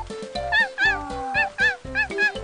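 A cartoon dog character giving a run of short, high yelps, about five in two seconds, over children's background music with a steady beat.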